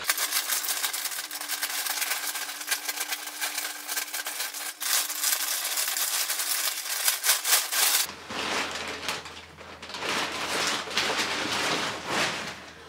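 Plastic poly mailer bag crinkling and tearing as it is pulled and ripped open by hand, a dense crackle that thins out about eight seconds in.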